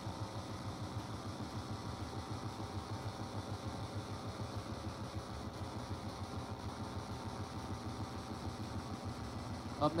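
Steady low background rumble and hum with no distinct event, the ambient noise of the broadcast or room between announcements.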